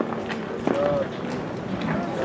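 Ballpark ambience of distant voices, players and spectators calling out, with one short call about a second in.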